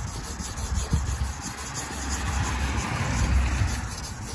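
Hand wet-sanding a plastic headlight lens with the coarser green side of a sanding pad: a steady rough rubbing that swells in the middle and eases off near the end, over a low rumble.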